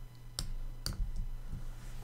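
A few sharp keystroke clicks on a computer keyboard while code is being edited: two clear ones about half a second apart, then a fainter one. A low steady hum runs underneath.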